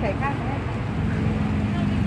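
People talking over the steady low drone of a running vehicle engine.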